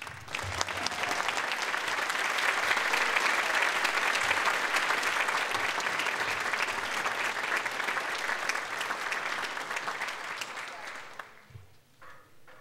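Audience applauding, starting all at once as the music stops, holding steady and dying away near the end.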